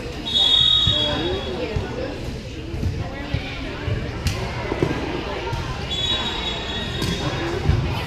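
Gymnasium sound during a volleyball match: chatter from players and spectators, and balls thudding on the hardwood floor. A steady high whistle blast sounds just after the start and again about six seconds in, typical of a referee's whistle starting or stopping play.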